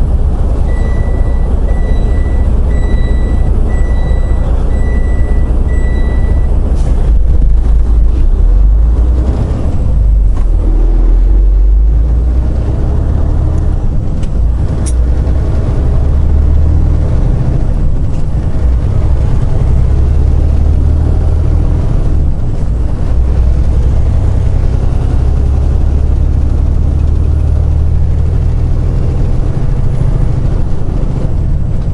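Loaded semi truck's diesel engine heard from inside the cab: a steady low rumble that swells as the truck pulls away and picks up speed about seven seconds in, then settles to cruising. Over the first six seconds a high electronic beep sounds six times, about once a second.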